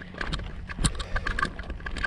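Footsteps crunching on a loose, stony dirt trail while walking uphill, with irregular sharp clicks of gravel underfoot.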